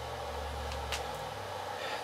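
Steady low hum and faint hiss of powered radio equipment in a small room, with a faint click or two about a second in as the hand microphone is handled.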